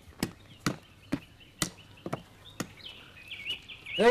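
Sharp, regular chopping knocks, about two a second, from a blade striking a piece of wood; they slow and stop a little past halfway. Small birds chirp in the background.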